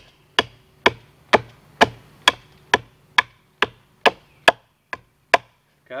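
Machete chopping into the end of a wooden pole: about a dozen sharp, evenly spaced strikes, roughly two a second, cutting a flat face into the pole's end.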